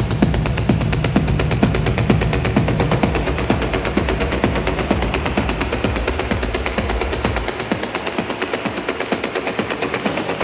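Dark, hypnotic techno: a fast, steady rhythm of ticking percussion over a heavy bass line and kick. About three-quarters of the way through, the bass and kick drop out, leaving only the ticking percussion.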